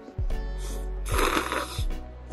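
Instant cup noodles slurped through the lips, one long slurp about a second in, over background music with a steady beat.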